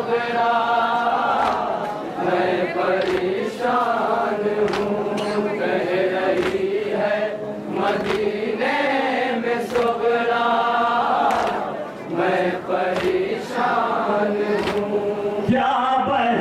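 Male reciters chanting an Urdu noha, a Shia lament, through a microphone, joined by a group of mourners. Chest-beating (matam) strikes fall in time with it, roughly one a second.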